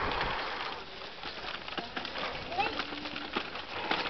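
Footsteps on a flagstone path, a run of short taps, with a rush of noise on the microphone in the first second and a few brief voice sounds near the middle.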